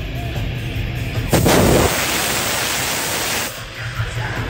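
A live industrial metal band playing, cut into about a second in by a sudden loud blast that turns into a dense hiss for about two seconds before the music comes back through: a stage CO2 jet firing.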